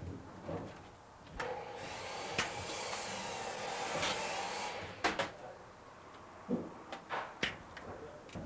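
Packaging being unwrapped from a dumbwaiter rail section: a steady rustling hiss lasting about three seconds, with a few sharp knocks and clicks of handling before and after it.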